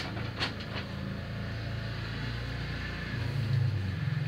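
Paper answer sheets being handled on a desk, with two short rustles about half a second in, over a steady low rumble that swells near the end.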